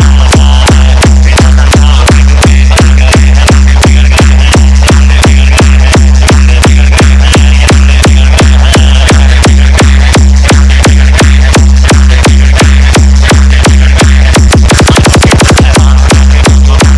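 A loud DJ 'hard vibration' electronic dance remix: a deep, sustained bass under a driving beat of about four hits a second. Near the end the beat tightens into a fast drum roll.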